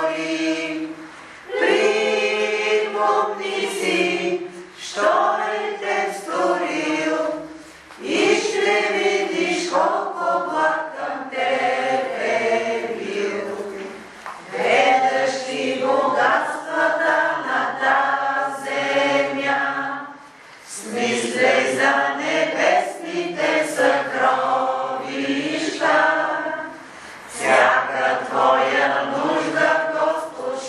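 A group of voices singing a hymn together in long sung lines, with brief pauses between phrases.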